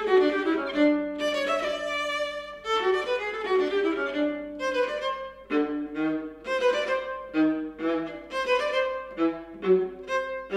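Solo viola playing an étude, a continuous run of separate bowed notes; from about halfway the strokes grow shorter and more detached, reaching down into the instrument's low register.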